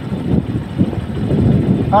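Motorcycle running at road speed, heard from the rider's seat, a steady rumble mixed with rushing wind and road noise.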